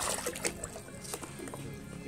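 Water being emptied out of a plastic measuring cup, a brief splash in the first half-second, over faint steady background music.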